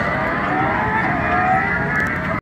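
Several go-karts running, their overlapping motor tones gliding up and down in pitch over a steady low rumble.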